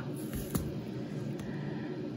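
Faint handling sounds of a plastic spice jar being turned on a countertop: a soft thud about half a second in and a light click about a second later, over a steady room background.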